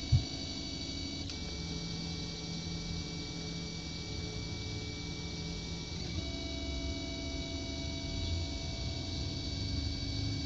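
Delta 3D printer running a print: its stepper motors sing in several steady tones over a low fan hum, and the pitches shift about a second in and again about six seconds in as the moves change. A short click right at the start.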